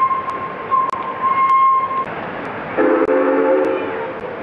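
Steam-era locomotive whistle: a high single-note blast held for about two seconds with a brief break. Shortly after, a deeper multi-note chime sounds for about a second near the end.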